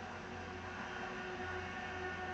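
Faint steady hum and hiss of a film soundtrack in a pause between lines of dialogue, played through a television's speakers and picked up across the room.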